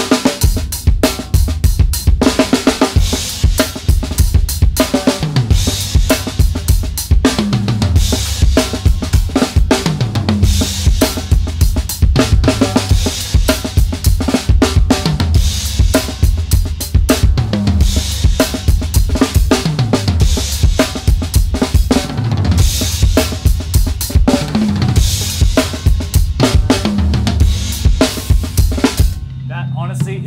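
Sonor SQ2 drum kit played in a steady 17/16 groove, a 4/4 beat plus one sixteenth, with five sixteenth notes on the snare to end each bar. Bass drum, snare and cymbals repeat a phrase about every two and a half seconds, and the playing stops about a second before the end.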